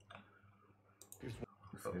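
A few sharp clicks of a computer mouse: a quick run about a second in and another near the end.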